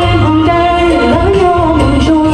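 A woman singing a wavering, held melody into a microphone over loud music accompaniment with a steady bass and beat.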